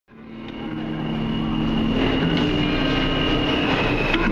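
Subway train noise fading in over about the first second, then running steadily: a noisy rumble with a few sustained low tones and a steady high whine.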